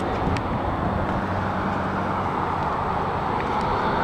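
1998 Mazda B4000's 4.0-litre V6 idling steadily, heard through its exhaust.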